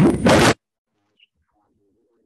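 A short, loud burst of rushing noise lasting about half a second, in two parts, then near silence.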